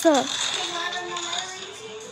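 A girl's excited shout of "Yes!" trailing off at the very start, followed by faint held tones, like background music, for the rest of the moment.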